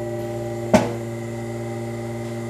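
Steady multi-pitched hum of a particulate filtration efficiency test machine, with one short sharp click about three-quarters of a second in as the penetration test ends and the airflow through the mask stops.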